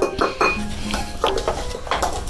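Measuring scoops knocking and scraping in powder canisters and against glass mixing bowls, a handful of short sharp clinks.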